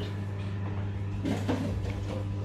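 Kitchen oven running with a steady low hum while its door stands open, with a brief knock of a baking tray being handled on the oven rack about one and a half seconds in.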